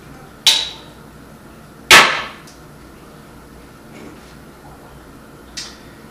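Sharp knocks and clinks of a lighter, glass bottle and snifter glass being handled and set down on a wooden table: a clink with a short ring about half a second in, a louder knock about two seconds in, and a faint click near the end.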